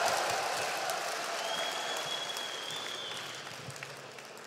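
Large concert-hall audience applauding and cheering, fading out steadily, with one long high whistle near the middle.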